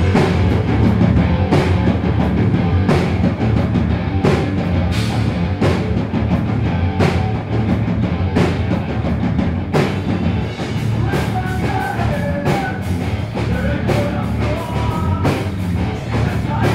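Rock band playing live and loud: electric guitar, electric bass and drum kit with a singer, the drum hits coming through as a steady beat over the dense band sound.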